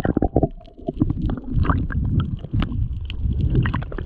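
Underwater sound heard through a submerged camera: a muffled low rumble of water moving around it, with bubbling and many small crackling clicks.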